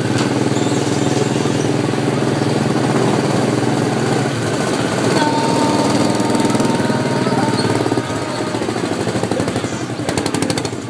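A go-kart's small petrol engine running steadily while the kart is driven, with a slight drop in level near the end.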